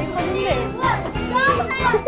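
A group of children shouting and cheering excitedly over upbeat background music.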